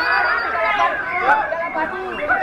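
Several people talking over one another in a steady babble of chatter.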